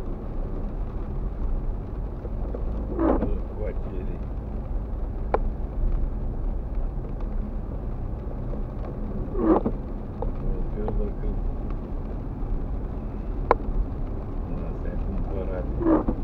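Steady low rumble of a car driving on a wet street, heard from inside the cabin. An intermittent windscreen wiper makes a short sweep about every six seconds, three times in all, with a few single sharp clicks in between.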